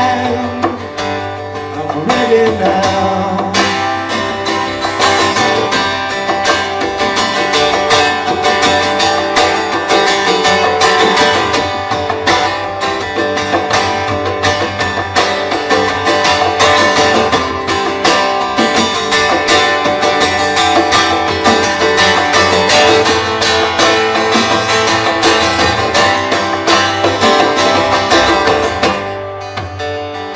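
A live acoustic band playing an instrumental passage: strummed acoustic guitar over upright bass, with cajón and hand drum keeping a steady beat. The playing drops back in level near the end.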